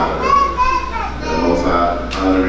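Speech only: a raised, high-pitched voice talking.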